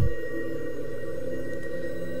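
Background music of low, steady held tones, with no rhythm or beat.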